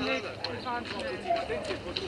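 Faint voices of people talking in the background outdoors, with a few light crunching steps on a gravel road.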